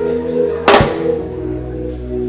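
Live church band music: sustained keyboard chords with one loud drum-kit hit under a second in.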